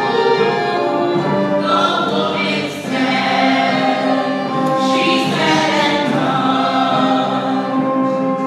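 A musical-theatre cast singing together in choral harmony, performed live in a theatre. It is a slow mock lament for a dead company member, with long held notes.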